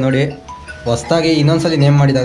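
People talking, with a brief bell-like tone about half a second in.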